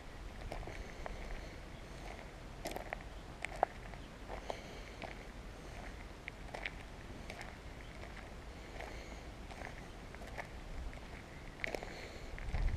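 Footsteps on a gravel track: quiet, irregular crunches and clicks of stones underfoot at a walking pace.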